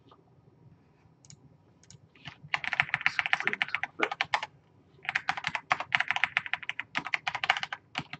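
Fast typing on a computer keyboard: two runs of rapid keystrokes, each about two seconds long, after a couple of quieter seconds with only a few scattered clicks.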